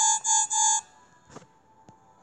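Storybook app's soundtrack: three short repeated reedy notes of the same pitch, then a sudden drop to near quiet with a couple of faint clicks.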